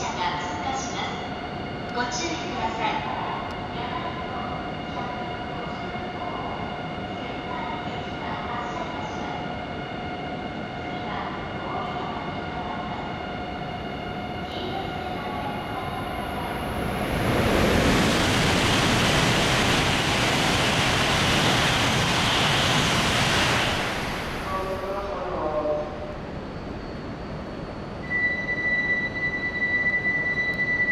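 Tohoku Shinkansen E5 series Hayabusa coupled to an E6 series Komachi passing straight through the station at very high speed. The rush of air and wheel noise swells about halfway through, stays loud for about eight seconds, then dies away quickly.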